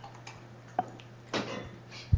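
A few scattered clicks and a knock in a quiet room, over a steady low electrical hum: a sharp click a little under a second in, then a louder, longer knock about halfway through.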